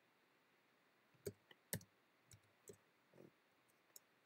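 Faint, separate key clicks of a computer keyboard as a short number is typed, about eight keystrokes starting about a second in.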